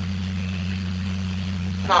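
Steady low electrical-sounding hum. A voice begins just at the end.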